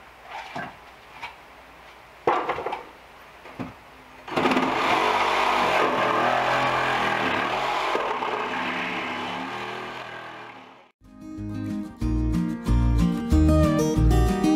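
A handheld power saw cutting through wood for about six seconds, starting about four seconds in after a few light knocks, then fading out. Acoustic guitar music starts near the end.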